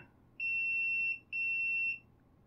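A multimeter's continuity beeper sounding twice, each a steady high beep under a second long, as the probes bridge a connector pin and a circuit-board test pad: the beep signals an electrical connection between them.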